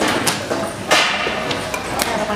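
A few sharp knocks or hits. The loudest comes about a second in and rings on briefly.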